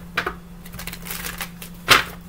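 A deck of reading cards being shuffled by hand: a few short, sharp card snaps, the loudest near the end, over a steady low hum.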